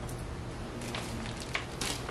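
Faint rustling of packing paper and a paper sheet as hands rummage in a cardboard box, with a brief louder rustle near the end.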